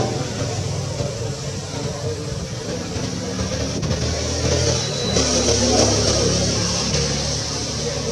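Low engine rumble of a motor vehicle, growing louder just past the middle.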